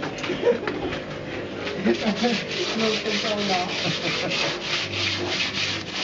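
Rapid, even hand rubbing or scraping strokes on a hard surface, about four a second, settling into a steady rhythm about two seconds in.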